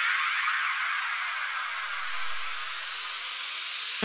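Breakdown in a dubstep track: a white-noise sweep hissing with the bass and drums dropped out, reaching lower in pitch as it builds toward the next section, while a few held synth tones fade.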